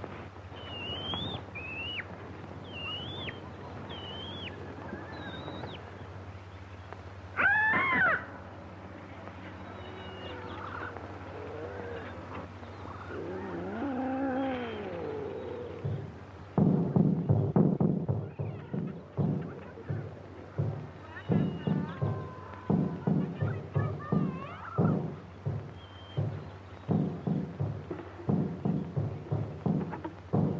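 Jungle sound effects on an old film soundtrack over a steady low hum: short chirping bird calls, a loud animal cry about eight seconds in and a wailing cry around fourteen seconds, then from about sixteen seconds native drums beating in a quick rhythm.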